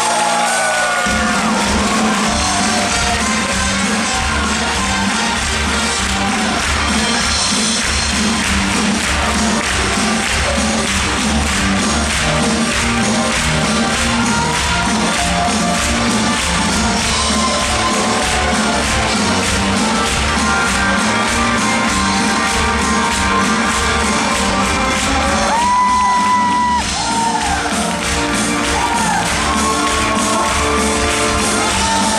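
Live dance band with a singer playing an up-tempo quickstep, with a steady driving beat and a long held note near the end. Spectators shout and cheer over the music.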